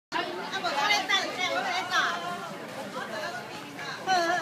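Speech only: people talking.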